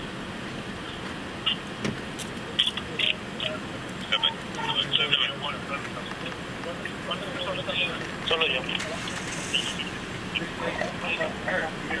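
Indistinct men's voices calling out in short bursts over a steady outdoor background hum.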